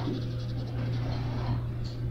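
A steady low hum on an old tape recording of a room, with faint scratching in the first half, the sound of a marker drawing on paper.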